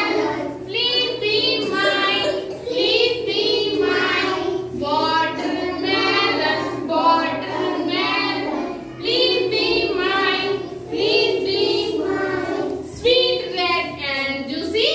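A group of young children singing together in short rhythmic phrases.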